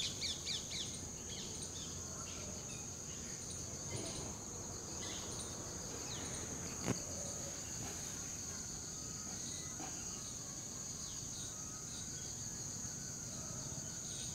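Steady high-pitched drone of insects, with a few short bird chirps near the start and a single faint click about seven seconds in.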